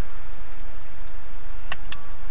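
Wind buffeting the microphone, a steady low rumble, with two sharp clicks close together near the end.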